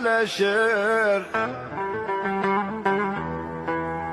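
Turkish folk song: a held, wavering sung note for about the first second, then a plucked string instrument playing a run of short notes.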